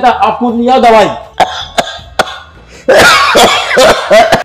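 A man talking in an agitated voice, then after a quieter stretch a loud, harsh cough near the end.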